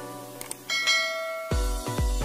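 Two quick clicks about half a second in, then a bright bell ding that rings on over background music. About one and a half seconds in, an electronic dance beat with heavy bass kicks in.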